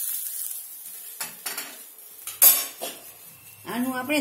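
A fading sizzle as hot ghee and milk soak into coarse gram flour, then a few sharp clinks and scrapes of metal utensils against a steel pot as the mixture is stirred, the loudest about two and a half seconds in.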